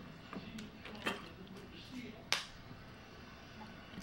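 A person drinking from a plastic water bottle: quiet gulps and a few soft clicks, the sharpest a little over two seconds in.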